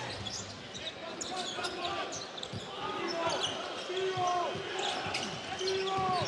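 Live basketball court sound: a ball bouncing on a hardwood floor and sneakers squealing several times in short rising and falling chirps, over the steady murmur of an arena crowd.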